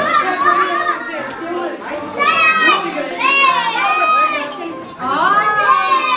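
A crowd of young children chattering and calling out at once, many high voices overlapping.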